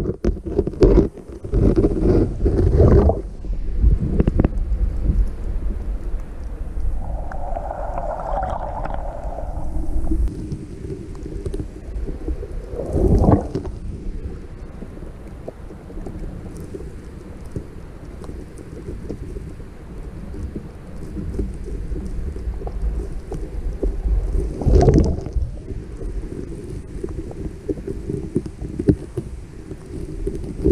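Underwater ambience in shallow surf picked up by a submerged camera: a steady low rumble of moving water with crackling, swelling louder about 13 and 25 seconds in.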